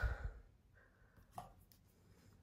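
Mostly quiet, with a soft low thump at the start and one faint short click about one and a half seconds in.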